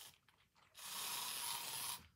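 Aerosol spray can hissing in one steady burst of about a second, starting partway in, after a few faint clicks.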